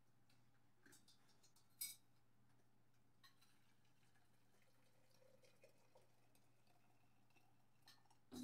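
Near silence: a steady low hum of room tone, with a few faint clicks and one short, sharper click just under two seconds in.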